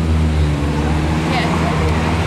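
Low, steady rumble of street traffic, a vehicle engine running close by, with faint voices underneath.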